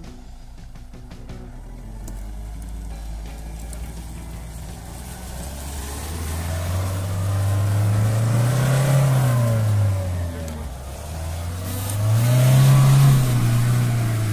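Mahindra Thar's engine revving under load as it pulls through loose sand, its wheels spinning. The engine note builds from a couple of seconds in and rises and falls twice, near the middle and again near the end, the second rev the loudest.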